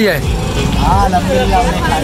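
Voices talking over a low, steady rumble of street traffic.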